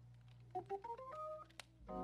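Organ playing softly: a short rising run of single notes, then a held chord that comes in near the end.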